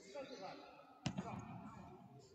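A single sharp slap of a judoka striking the tatami mat about halfway through, with a short echo after it.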